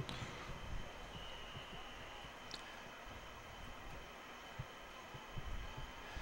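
Faint stadium crowd and field ambience, low and even, with a few small thumps.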